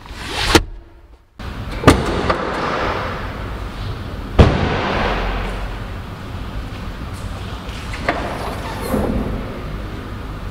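Rustling handling noise with sharp knocks: a knock about two seconds in and a louder one about four and a half seconds in, with fainter ones near the end.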